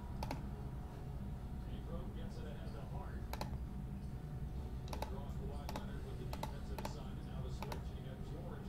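Scattered key clicks on a computer keyboard, a handful of separate sharp taps at irregular moments over a low steady hum.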